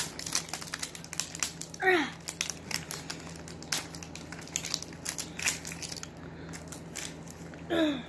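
Plastic packaging tape being picked at and peeled off a plastic toy capsule by hand, crinkling and crackling in irregular small clicks.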